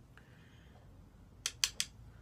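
Three quick, sharp clicks close together, from makeup gear being handled on the table.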